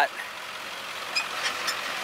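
Converted short school bus running at low speed as it crawls over a rough, rocky dirt track, a steady engine and road noise heard from outside. A couple of faint ticks come through near the middle.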